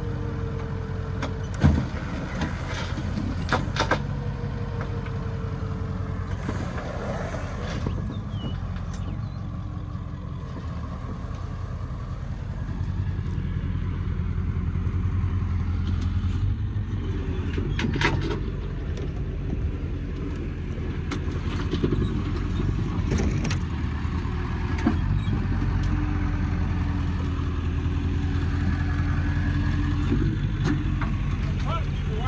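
A rollback tow truck's engine runs steadily, getting louder about twelve seconds in. A few sharp metallic clanks come through over it.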